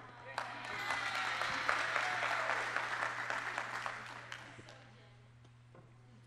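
Audience applauding, rising about half a second in, at its fullest around two seconds, then dying away by about five seconds.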